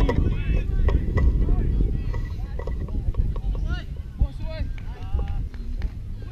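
Wind buffeting the microphone as a steady low rumble, with faint, indistinct shouts and talk from players across the field.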